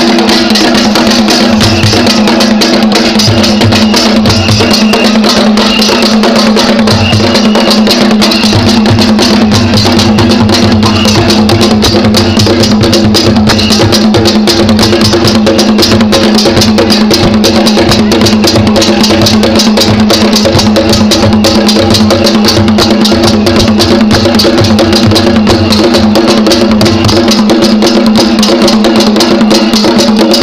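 Traditional drum ensemble: skin-headed drums beaten with sticks in a loud, dense, fast rhythm that keeps going without a break.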